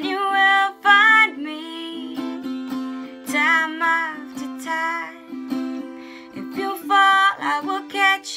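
A woman singing over a four-string tenor guitar tuned like a ukulele, its strings plucked in a steady accompaniment. Her sung phrases come and go, with pauses where only the guitar rings.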